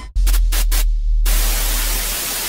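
Electronic intro sting: a deep bass tone comes in suddenly with a few short bright bursts over it, then gives way a little over a second in to a steady, loud hiss of TV-style white-noise static.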